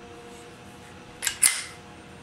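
Two sharp metallic clicks about a fifth of a second apart, the second louder, from the action of a CZ 75 P-07 Duty 9mm pistol being worked by hand.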